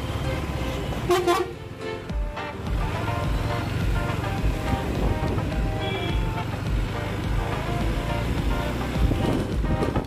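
KTM Duke 390 single-cylinder motorcycle running through slow town traffic, with a vehicle horn sounding briefly about a second in. Background music with a steady beat plays throughout.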